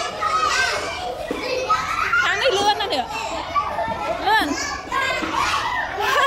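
A roomful of young children chattering and calling out over one another, with a few high, excited cries in the middle.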